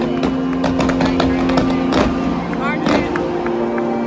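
Stadium fireworks going off in a run of bangs and crackles, the sharpest about two and three seconds in, over a cheering and shouting crowd, with a held low note underneath.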